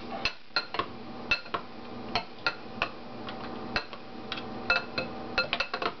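Metal spoon clinking against a ceramic bowl while a bean and salsa mixture is stirred from underneath: irregular light clinks, a few a second.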